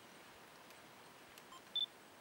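A single short, high-pitched electronic beep from a camera near the end, just after a faint click, over quiet background hiss.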